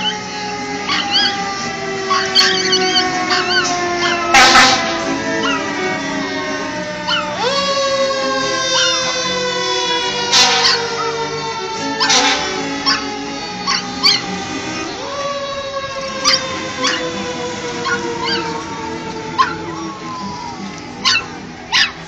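Cello quartet playing. Over it, a wailing tone falls slowly in pitch over several seconds and jumps back up twice, and short high yelps and sharp sounds are scattered through.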